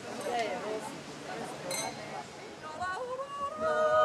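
Guests talking quietly, with a wine glass clinking once, then near the end a women's yodel choir starts singing a cappella, gliding up into a sustained chord that swells.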